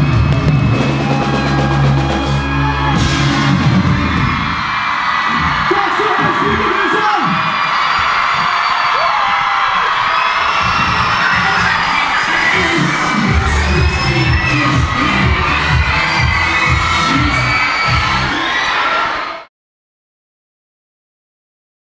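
Live pop music with a heavy bass beat through a festival PA, stopping about four seconds in, then a large crowd cheering, screaming and whooping. The sound cuts off suddenly near the end.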